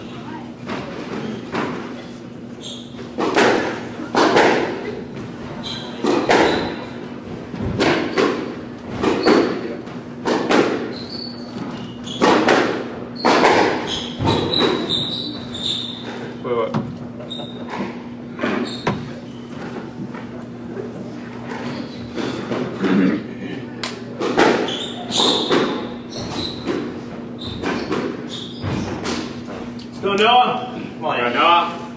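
Squash ball being struck by racquets and smacking off the court walls in an echoing court, about one hit a second, in two spells of play with a lull in the middle.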